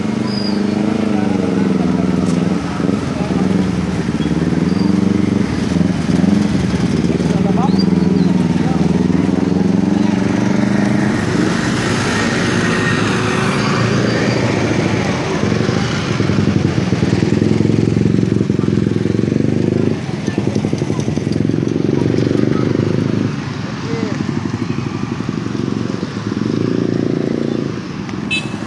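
A motor vehicle engine runs close by, its pitch wavering slightly over the first ten seconds, then continuing as a steady rumble with a drop in level about twenty seconds in.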